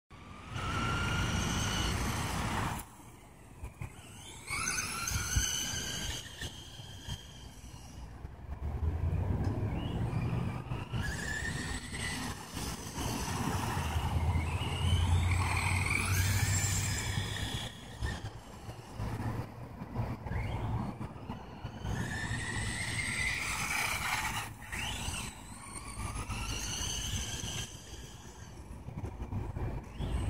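Electric motor of a Team Losi Racing 22 SCT RC short-course truck, mounted in the rear-motor layout, whining up in pitch with each burst of throttle and dropping away when the throttle is released, about half a dozen times, over a steady low rumble.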